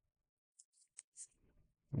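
Near silence in a pause, broken by a few faint, very short clicks and hisses about half a second to a second and a half in.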